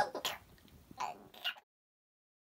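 A man's laugh trailing off, then two short throat-clearing sounds about half a second apart.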